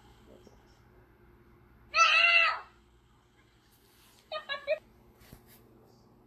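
A toddler's high-pitched voice: one long whining cry about two seconds in, then three short cries a couple of seconds later.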